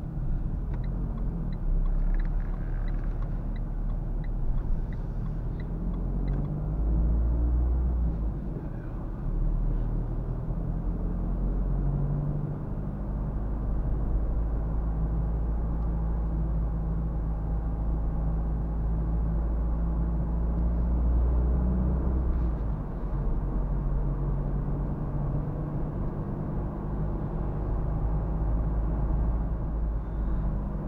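Renault Clio IV's 1.5 dCi four-cylinder turbodiesel and tyre and road noise heard from inside the cabin while driving, a steady low drone. Its pitch and level shift a few times.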